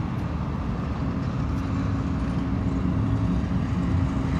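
Steady low mechanical rumble with an even droning hum.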